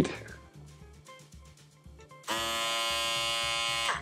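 Wahl cordless foil shaver switched on about two seconds in, running with a steady buzz, then switched off right at the end.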